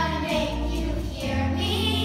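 A group of children singing together in a stage musical number, with instrumental accompaniment carrying a steady bass line under held sung notes.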